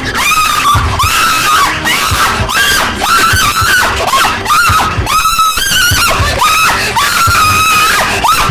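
A young woman screaming and crying out in short, high, repeated cries, about one or two a second, over background music with low thuds.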